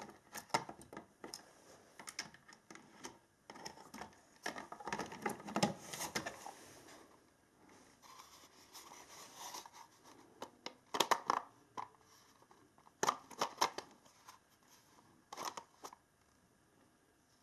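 Hard plastic charger casing and its parts being handled and fitted together by hand: irregular clicks, knocks and scraping, with louder bunches of clicks around the middle and again near the end.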